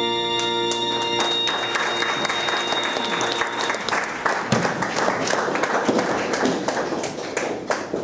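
The final chord of the song's accompaniment is held, then audience applause breaks out about a second in and carries on, easing off near the end.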